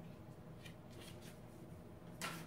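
Faint rustling of cardstock album pages as a flip-up photo page is folded down, three soft brushes of paper around the middle over low room hum.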